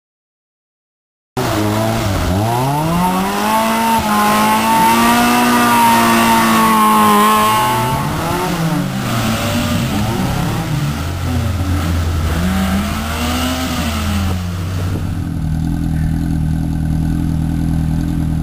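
Suzuki Samurai 4x4's engine revving up and down repeatedly under off-road load, starting abruptly after about a second of silence. In the last few seconds it settles to a steadier, lower note.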